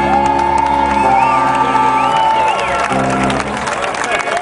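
A live band's closing chord on keyboards and guitars held and ringing out, with the crowd cheering and whistling over it; the chord dies away about three seconds in, leaving applause and cheers.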